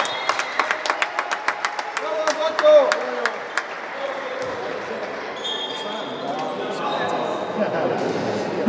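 A few people clapping their hands quickly and evenly, about five claps a second, in a sports hall with a lot of echo. The clapping stops about three and a half seconds in, with a short shout near its end, and leaves the quieter hum of the hall.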